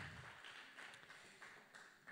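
Faint shuffling and a few soft taps as a seated congregation settles back into its seats, dying away toward quiet room tone.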